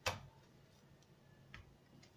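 Two sharp taps of hands working croissant dough on a marble countertop: a louder one right at the start and a fainter one about a second and a half in.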